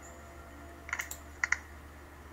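A few sharp clicks in two quick groups, one about a second in and one half a second later, over faint steady background music.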